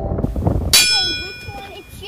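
A single bright metallic ding, about three-quarters of a second in, ringing and fading over about a second.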